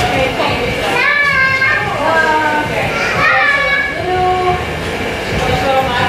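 High-pitched voices with gliding pitch, most marked from about a second in to past the middle, over a steady low background hum.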